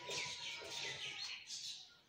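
Marker pen squeaking and scratching across a whiteboard in a quick run of short strokes as a word is written.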